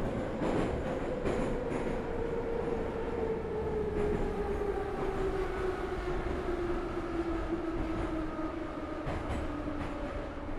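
A train running and slowing down: a whine that falls slowly and steadily in pitch over a steady rumble, with a few faint clicks about a second in and again near the end.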